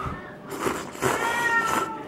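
A domestic cat meowing: one drawn-out meow in the second half, its pitch sagging slightly toward the end.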